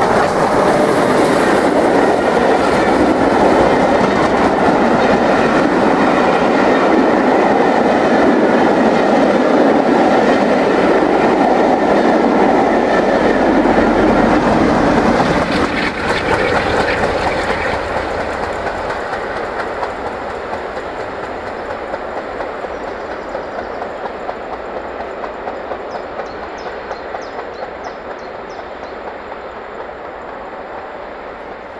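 Steam-hauled passenger train behind LMS Jubilee Class 4-6-0 No. 45699 Galatea passing close at speed, its coach wheels clattering over the rail joints. About halfway through the sound drops and then fades steadily as the train recedes.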